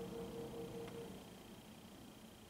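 Grand piano chord held and dying away, fading out about a second in. After it there is only faint room tone with a steady high whine.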